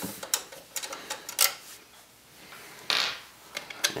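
Scattered light clicks and knocks of hands working a video card's metal bracket and the PC case while freeing the card from its PCIe slot, with one short scrape about three seconds in.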